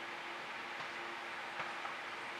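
Steady faint background hiss with a low, even hum and no distinct event, apart from a couple of very faint soft ticks.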